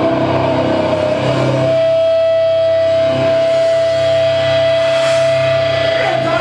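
Live hardcore punk band finishing a song at full volume, then from about two seconds in a single steady tone of electric guitar feedback ringing on from the amp as the drums stop.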